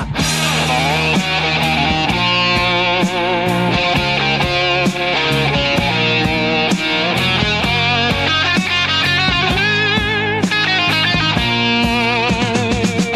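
AI-generated (Udio) hard rock instrumental passage: a lead electric guitar plays a melody with wavering vibrato over a steady drum beat and bass, with no vocals.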